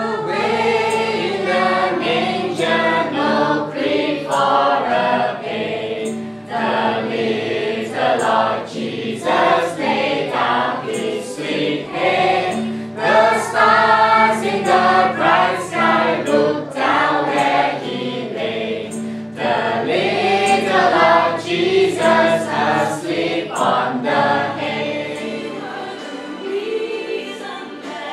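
A mixed group of adults and children singing a Christmas carol together in unison, with a steady low held note underneath.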